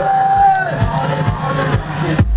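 Dance music played loud by a DJ over a sound system, a melodic line over a beat, with crowd noise from the audience mixed in.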